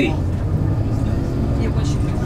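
Steady low rumble of a moving tour bus heard from inside the cabin: engine and road noise.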